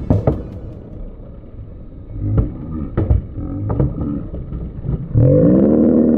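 Busy city street noise of traffic with a few sharp knocks. Then, about five seconds in, a man lets out a loud, drawn-out yell that rises and falls in pitch.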